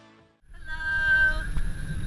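Background music fades out, then car-cabin road rumble begins about half a second in. Over it comes one short, high, held call with a voice-like tone lasting under a second.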